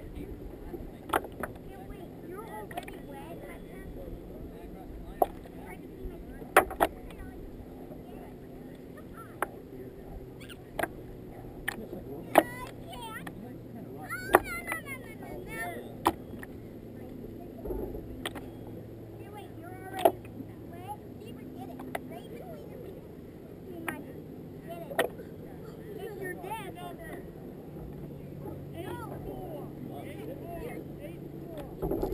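Kayak paddle blades splashing into the water at irregular strokes, sharp splashes every second or two, over water washing against the hull.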